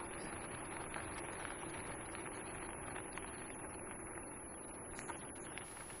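Wheels of a rig pulled by two huskies rolling steadily over a dirt-and-gravel path: a continuous rumbling hiss with scattered small clicks.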